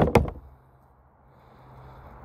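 Two quick, sharp knocks at the very start, then faint background hum and hiss.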